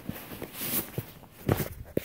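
A few soft footsteps in a room, then louder bumps near the end as the recording phone is picked up and handled.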